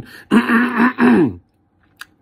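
A man's loud, rough cough clearing his throat, in two quick parts lasting about a second.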